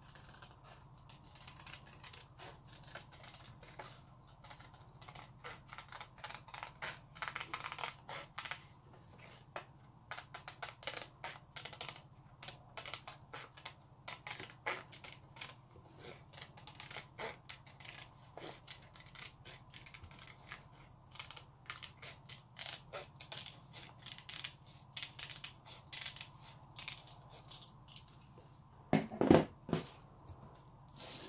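Scissors snipping through paper: many short, crisp cuts in irregular runs as a circle is cut out by hand. A few louder knocks come near the end.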